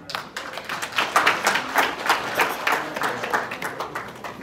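Applause: hands clapping in quick, uneven claps.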